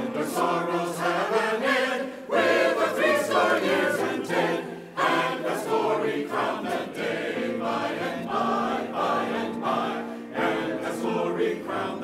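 Church choir singing a hymn in parts, accompanied on grand piano.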